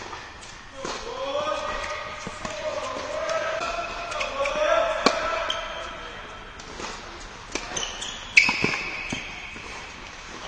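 Tennis ball bouncing and being struck by rackets on an indoor hard court: several sharp knocks that echo, the loudest about eight seconds in.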